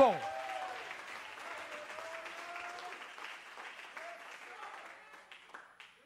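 Congregation applauding with a few scattered shouted voices, dying away after about five seconds.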